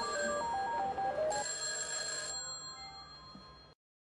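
A simple electronic melody of short stepped notes, like a phone ringtone, fading out to silence near the end.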